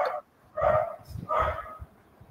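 A dog barking twice, two short barks under a second apart.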